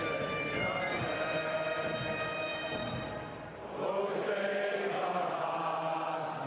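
Bagpipe music with steady held notes, which drops away about three and a half seconds in and gives way to voices chanting or singing together.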